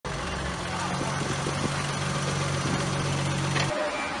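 A car engine idling steadily under outdoor noise, cut off abruptly near the end.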